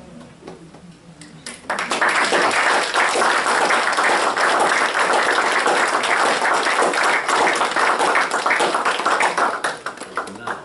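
A short burst of audience laughter, then a room full of people breaking into applause about two seconds in. The clapping is loud and steady and begins to die away near the end.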